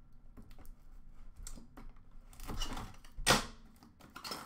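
A knife slitting the wrap and seal on a cardboard hockey card box, heard as scattered light clicks and scrapes of blade on plastic and cardboard. A louder, sharp sound comes a little past three seconds in as the seal gives.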